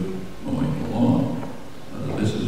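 A man's voice speaking into a microphone, with a pause at the start and the loudest stretch about a second in.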